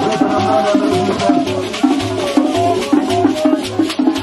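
Loud upbeat live band music: a steady bass drum beat about twice a second, a shaker keeping time, and a melody line over them.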